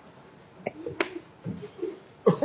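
A few sharp clicks: one at the start, then two more close together about a second in, with faint low voices between them.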